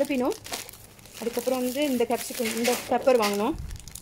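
Clear plastic produce bags crinkling as they are handled and pressed, under a voice talking with short pauses.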